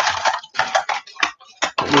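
Hands rummaging in a clear plastic bag of mixed small items: crinkling plastic, then a run of sharp, irregular clicks and clinks as the objects inside knock together.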